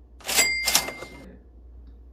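Cash-register "ka-ching" sound effect: two quick hits just under half a second apart, with a bell ring lasting about a second.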